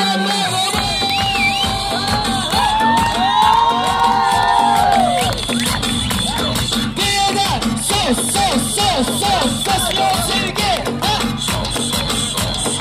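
Loud live music over a concert sound system with a steady beat, while a crowd cheers and shouts; clusters of high, rising-and-falling shouts come about three to five seconds in and again from about seven seconds on.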